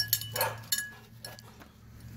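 Siberian husky moving about on a tether: a couple of light clicks from its metal collar tags and a short breathy huff about half a second in, then quieter as it comes to a stop.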